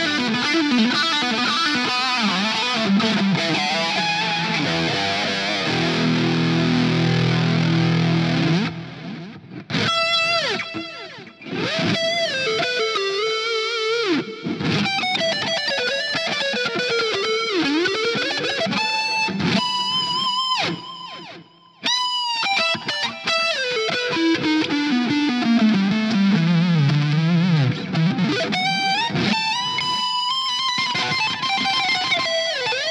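Firefly relic Les Paul-style electric guitar with humbucker pickups, played through a Fender GTX100 amp. It plays dense chordal riffing for about the first nine seconds, then single-note lead lines full of string bends and slides, broken by two short pauses.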